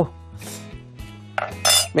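Kitchen knife scraping on a wooden cutting board as it slices soft confited aubergine: two short scrapes, the second and brighter one near the end.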